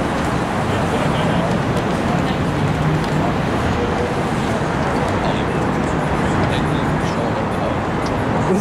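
City street noise: steady road traffic with indistinct voices in the background.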